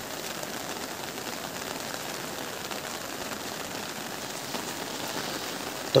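Steady monsoon rain falling, an even hiss with no change.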